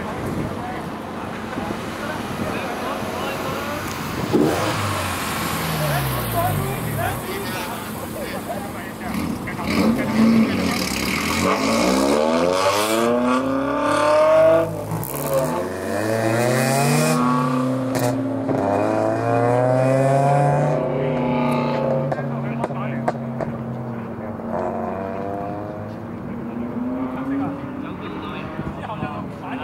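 Cars on a race circuit passing and accelerating, their engine notes rising and falling in pitch as they go by, loudest in the second half.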